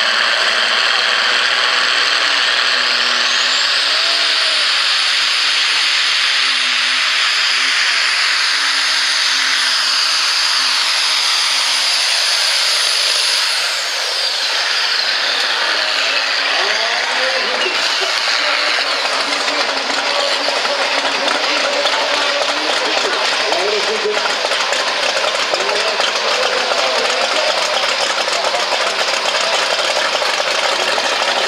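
Superstock pulling tractor's diesel engine running at full power through a pull, loud throughout, with a high whine that rises over the first few seconds, holds, and falls away about thirteen seconds in.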